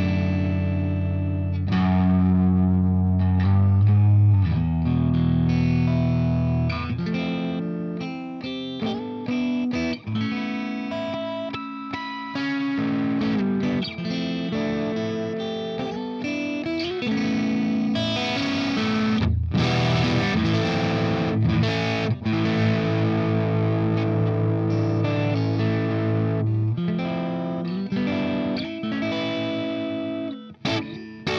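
Electric guitar played through a Marshall amplifier: a Framus 'Plank' prototype with humbucker pickups. It opens with low sustained notes for the first few seconds, then moves into busier riffs and chords.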